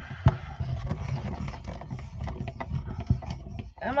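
Stampin' Up! Stamp & Cut & Emboss mini die-cutting machine being hand-cranked, its rollers drawing a die and watercolor-paper sandwich through. It makes a low grinding rumble with irregular clicks and knocks. The thick watercolor paper makes it hard going.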